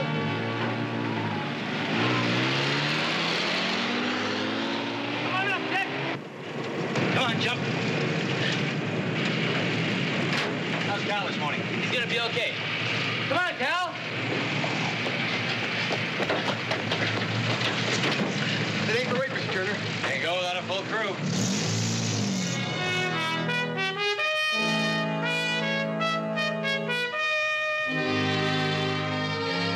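A Jeep engine pulls away, its pitch rising for a few seconds, then keeps running with steady vehicle noise. Brass-led orchestral music plays at the start and comes back near the end.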